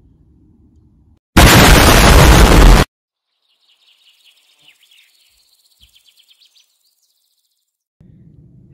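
A loud burst of noise about a second and a half long that starts and cuts off abruptly, an explosion-like sound effect. It is followed by faint, high bird chirps for a few seconds.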